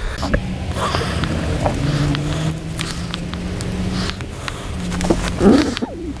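Felt-tip marker scratching and rubbing as it traces around a paper template held on a wood block, with a few small clicks, over a steady low hum. A brief voice sound comes near the end.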